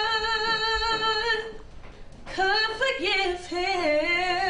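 A girl singing solo: a long held note with vibrato, a brief break about halfway through, then a phrase of several sung notes.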